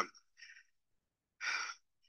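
A man's breath and sigh into a close handheld microphone: a faint breath about half a second in, then a louder exhaled sigh near the end.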